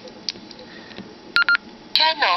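Baofeng UV-5R handheld transceiver beeping as it powers up: two short, identical tones in quick succession about a second and a half in, followed by a click near the end.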